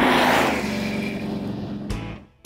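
A car engine sound effect played under the show's logo sting. It starts suddenly and loud, fades over about two seconds, and ends with a sharp hit.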